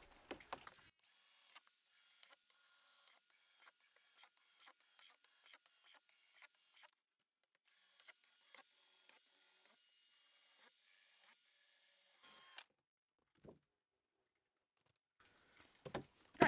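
Faint whine of a cordless drill boring holes through the thin wall of a plastic storage box, heard as many short bursts with a brief pause about seven seconds in; it stops about twelve seconds in.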